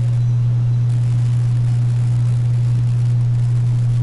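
A loud, steady low hum, unchanging and with nothing else standing out over it.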